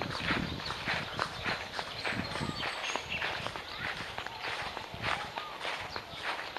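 Footsteps of someone walking across a grass lawn, about two steps a second.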